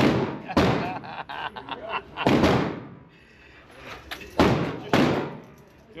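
Gunshots from other lanes of an indoor range: several loud single reports, irregularly spaced with fainter ones between, each ringing on in the room's echo.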